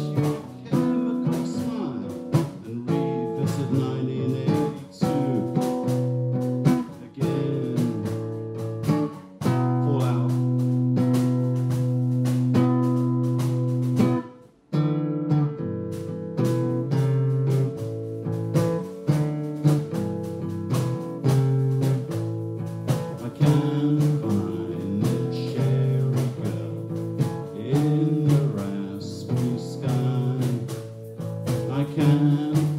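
Acoustic guitar played live through a PA, a run of ringing chords that change every second or two. There is a brief pause about halfway through.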